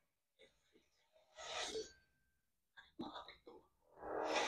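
Mostly quiet, with a faint breathy, whisper-like voice sound about one and a half seconds in and a few short faint voice sounds near three seconds.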